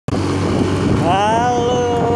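A motorcycle being ridden, its engine running steadily under wind noise. About a second in, a person's drawn-out call rises and then holds one note.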